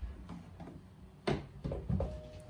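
Quiet room tone with a few soft knocks and bumps from an acoustic guitar being lifted and set down, the clearest about a third of the way in and again near the end.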